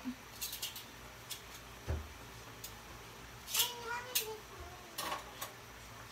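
Quiet kitchen sounds while calamansi are squeezed by hand over a wok: a few faint light clicks and a soft low thump about two seconds in. A faint voice is heard briefly in the background around the middle.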